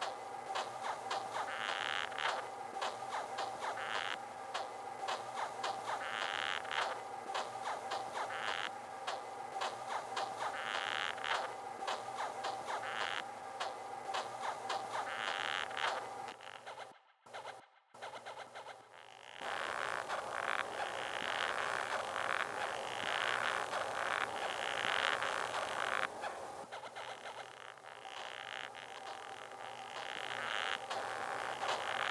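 Techno track built from layered, slightly processed rhinoceros beetle sounds: dense clicking over a steady tone, with brighter scratchy bursts pulsing about every two seconds. It drops out almost to silence for a few seconds past the middle, then resumes.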